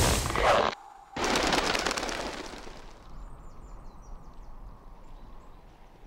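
Cartoon sound effects: a loud rushing blast that cuts off under a second in, then a second blast that fades away over about two seconds. A faint hiss follows, with a few small high chirps.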